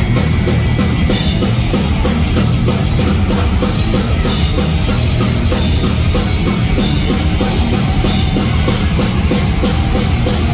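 Hard rock band playing live: loud electric guitars over a steady drum-kit beat.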